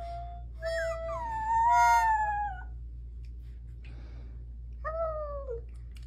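A pet's drawn-out howl that bends up and down in pitch for about two seconds, then a shorter falling howl near the end, over a low steady hum. A few held, steady instrument notes sound alongside the first howl.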